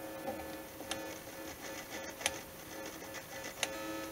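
Electric guitar plugged into an amplifier: a steady hum with small crackles and a few sharp pops as the controls are worked, a sign of dirty volume pots and switch that have gone long uncleaned.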